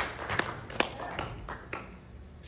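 A pause in a man's speech in a reverberant hall: his voice's echo dies away, then a few scattered sharp taps sound over a faint low hum.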